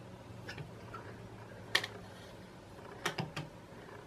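A few light clicks and taps as a ruler is shifted and set against the glass of an empty aquarium, the strongest about halfway through and two close together near the end, over a faint steady low hum.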